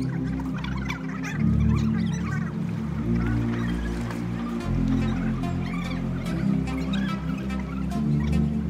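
Background electronic music with a deep bass line whose notes change every second or two.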